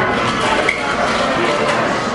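Busy restaurant din: background chatter with dishes and cutlery clinking, and one sharper clink under a second in.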